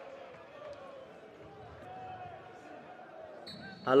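Faint live ambience of a football match: distant voices and shouts from the pitch and stands over a low background hiss.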